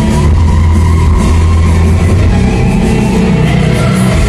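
A live rock band played loud through an arena PA system, heard from the stands, with a heavy sustained low bass note underneath.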